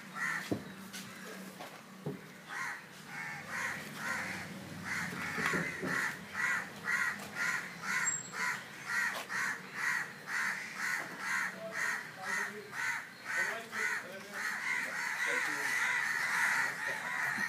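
Many crows cawing in the trees, calls repeating about twice a second and thickening into a dense chorus near the end.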